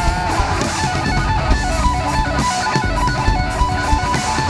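Rock band playing live: strummed electric guitar over heavy drum hits, with no vocals in this passage.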